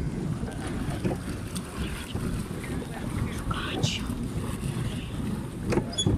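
Wind rumbling on the microphone over the steady wash of water around a plastic pedal boat moving across the water.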